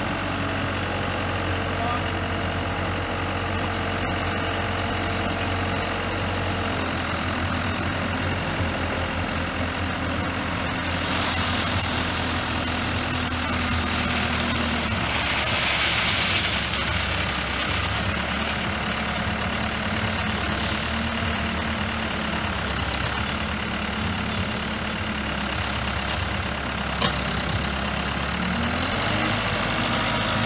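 Diesel engine of heavy construction equipment running steadily, its pitch shifting a few times. A louder hiss comes in for several seconds near the middle and again briefly a little later.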